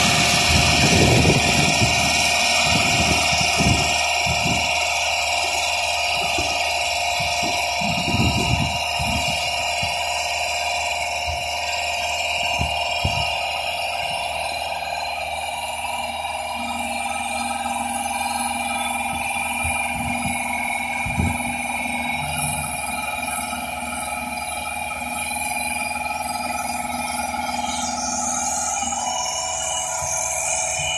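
Genie S-125 telescopic boom lift running: a steady machine drone with a high, even whine held throughout, and some low irregular thumps in the first half.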